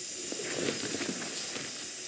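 A steady hiss of room noise with faint, irregular soft rustles, and no voices.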